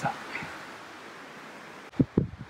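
Faint, steady rustle of wind moving through the trees, which cuts off abruptly near the end.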